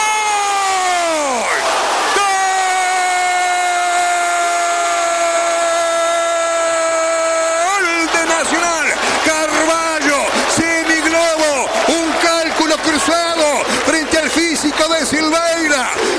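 A radio football commentator's goal cry: one long held "gol" of about eight seconds, its pitch sinking slightly at first and then held steady, breaking near the middle into fast, excited shouting.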